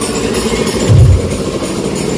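Loud dance music played through a large loudspeaker system, with deep bass beats. A heavy bass beat lands about a second in.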